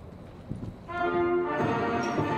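Low background noise with a few knocks about half a second in, then brass-led orchestral music starting about a second in with held chords, accompanying the raising of the US flag.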